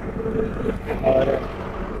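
Low, steady wind rumble on a handheld microphone, with a man saying one short word about a second in.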